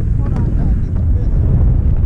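Wind buffeting an action camera's microphone: a steady low rumble.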